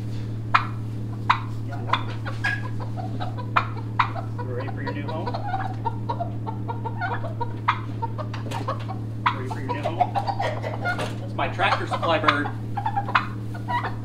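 A hen clucking and squawking as she is grabbed by hand out of a nesting box. The squawking is loudest and busiest between about ten and twelve and a half seconds in. Before that there are scattered sharp clicks, all over a steady low hum.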